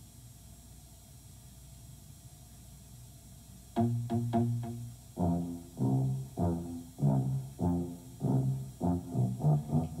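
Near silence for the first few seconds, then a tuba playing a run of short, separate low notes, two to three a second: an oompah bass line leading into a theme song.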